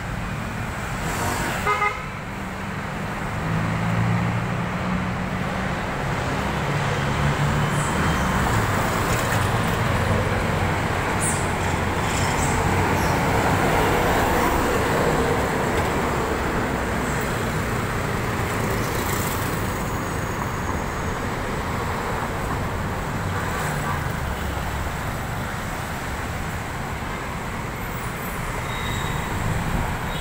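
Steady road traffic on a busy avenue: cars and motorcycles passing, with a vehicle horn sounding briefly about two seconds in.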